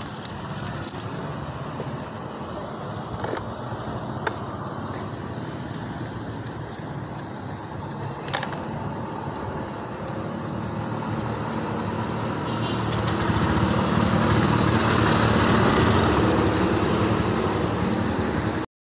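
Honda fuel-injected scooter engine running with the bike at a standstill, a steady hum that grows louder in the second half, with a few sharp clicks early on.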